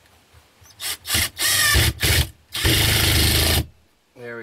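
Cordless drill driving screws through a metal outlet box into a wooden wall stud: a few short bursts, then two longer runs, the last about a second long and stopping abruptly.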